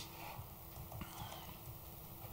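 Faint footsteps with a few soft knocks, heard against low room tone.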